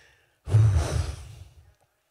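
A man sighing into a handheld microphone held close to his mouth: one breathy exhale that starts about half a second in and fades away over about a second, with a heavy rush of breath on the mic.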